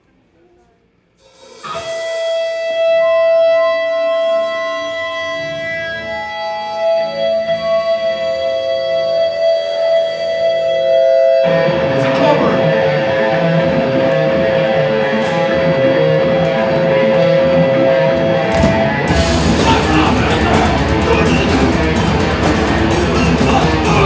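Live hardcore band beginning a song: an electric guitar comes in about a second and a half in with one long held note over other ringing notes. Heavy distorted guitar and bass take over about halfway through, and the drums and full band come in near the end.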